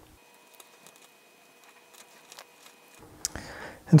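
Solid-core jumper wires being pressed into a solderless breadboard: a few faint, scattered clicks, with a sharper click a little past three seconds in. A faint steady whine sits under the first three seconds and then stops.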